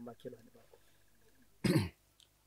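A person's single short, sharp cough about a second and a half in, during a pause in an outdoor interview.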